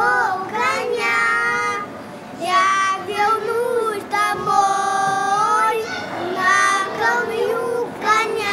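Young children singing a song together, in short phrases with brief breaks between.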